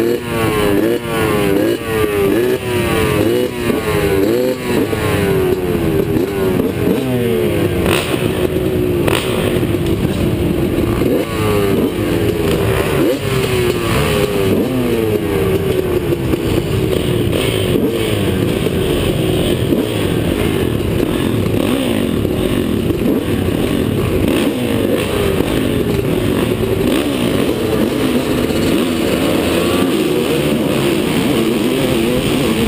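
Several motocross bikes revving at the starting gate, their engines rising and falling in pitch over one another, loud and without a break.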